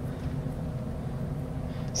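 Room tone: a steady low background hum with faint hiss, and nothing else happening.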